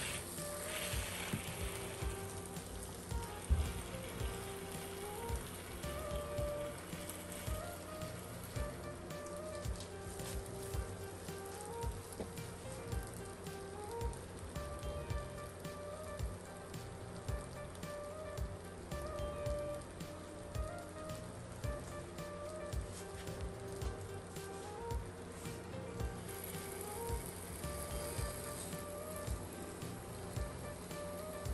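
Waffle batter sizzling and crackling with many small pops inside a closed mini waffle maker as it cooks, under quiet background music.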